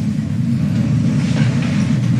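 Steady low rumble.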